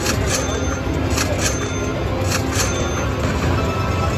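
Slot machine's win celebration music and chimes playing steadily while a free-spins bonus win counts up on the meter.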